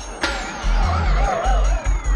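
Psytrance: a chopped, rolling bass line under a synth tone that falls slowly in pitch and a warbling synth line, with a sharp hit about a quarter second in.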